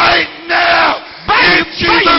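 Loud, impassioned shouting from a worshipping congregation: voices crying out in short bursts with sliding pitch and brief lulls between them.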